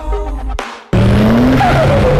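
Electronic music, broken off about a second in by a sudden loud burst of car sound: an engine revving, its pitch rising and then falling, over a rushing noise.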